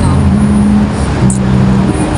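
City street traffic noise: a steady low hum of vehicle engines under a constant roar of road noise.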